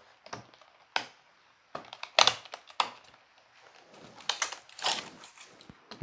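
Stiff clear plastic packaging snapping and crackling as a battery charger is worked out of its box: a sharp snap about a second in, two louder ones around two seconds in, then a run of crackles near the end.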